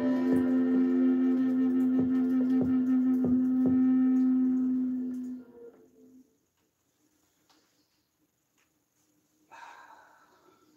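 A large, low-pitched bamboo Native American-style flute holds a long final low note with soft plucked guitar notes beneath it, fading out about five and a half seconds in. A brief rustle of handling comes near the end.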